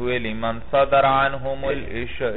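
A man's voice reciting a line of Arabic text in a chanting, drawn-out cadence.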